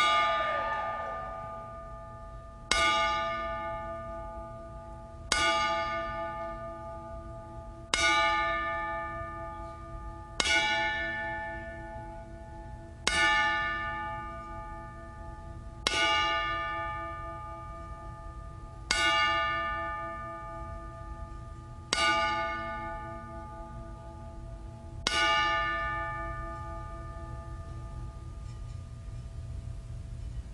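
Wrestling ring bell struck ten times at an even, slow pace, about every two and a half to three seconds, each strike ringing out and fading before the next. It is the traditional ten-bell salute for a wrestler who has died.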